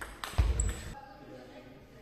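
Table tennis rally: the ball clicks off a bat and the table, followed by heavy footfalls on the sports-hall floor and a short shoe squeak about half a second in.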